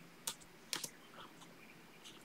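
A few faint keystrokes on a computer keyboard, clustered in the first second: a short typed chat message being corrected and sent.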